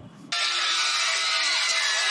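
An animated crowd screaming in panic, many high voices overlapping in a dense din, with music underneath; it cuts in about a third of a second in after a brief near-quiet gap.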